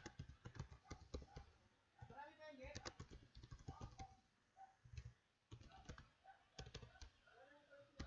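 Faint typing on a computer keyboard: quick runs of key clicks broken by short pauses.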